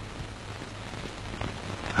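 A steady, even hiss that sounds like rain, with a few faint ticks over a low hum.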